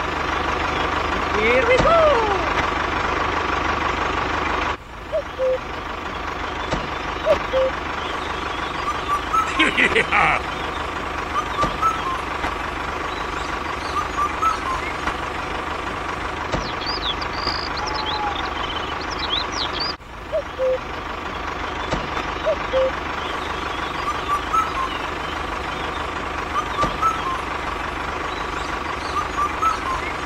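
Steady engine running noise, like a tractor idling, with short high chirps scattered over it. The sound dips and cuts briefly about five seconds in and again near twenty seconds.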